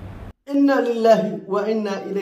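Only speech: a man talking in a thin, narrow-sounding recording cuts off a third of a second in, and after a brief gap another man starts talking in clearer, fuller sound.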